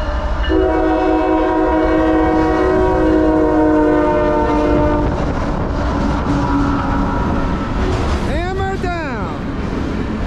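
Air horn of a CSX GE ES44AC-H diesel locomotive sounding one long multi-note chord of about four and a half seconds, over the steady low rumble of the locomotives and wheels of a passing freight train. Near the end a brief tone rises and falls in pitch.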